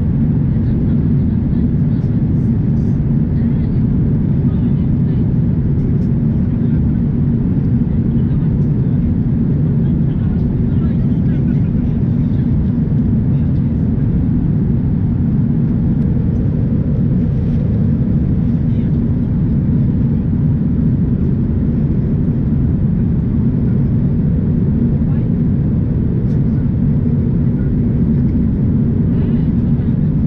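Steady cabin noise of an Airbus A350-900 airliner in flight: a constant low rush of airflow and engine noise, unchanging in level, heard from a window seat.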